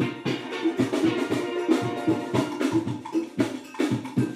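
Steel band with snare drums playing an instrumental passage: quick, even drum strokes under short, repeated steel pan notes.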